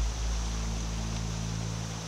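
Rushing river water as an even hiss, under a deep low rumble and a steady low drone that begin suddenly at the start.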